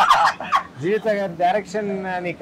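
Two men laughing heartily: choppy bursts of laughter at first, then a longer drawn-out laugh from about a second in.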